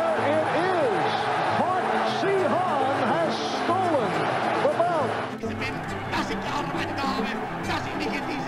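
Background music: sustained low chords under a line of quick rising-and-falling notes. The music changes about five seconds in, where the edit cuts to another clip.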